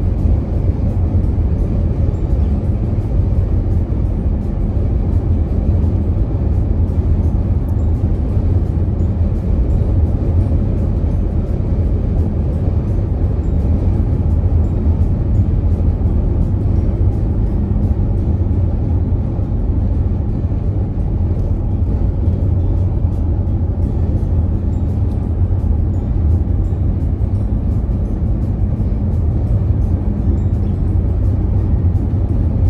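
Steady road and tyre rumble of a car cruising at highway speed, heard from inside the cabin.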